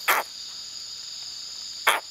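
Tokay gecko calling: two short, sharp barking notes, about two seconds apart. A steady high-pitched insect trill runs underneath.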